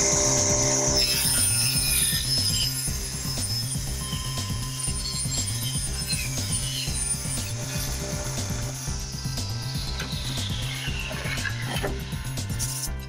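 Table saw running as a pine board is fed through it, under background music.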